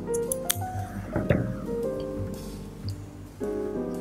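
Background music with sustained keyboard notes. A couple of short, sharp snips, about half a second and just over a second in, from scissors trimming a yarn tassel.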